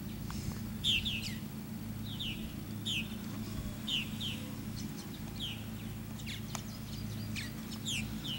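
Birds calling repeatedly: short, harsh, downward-sliding calls, often in quick pairs, about once a second, over a steady low hum.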